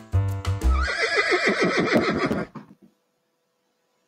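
Background music with a steady beat stops about a second in and a horse whinny sound effect follows, a wavering call lasting about a second and a half that falls in pitch as it fades.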